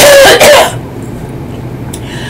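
A woman coughing into her fist: one sudden cough in two quick parts, over in under a second, followed by quiet room tone.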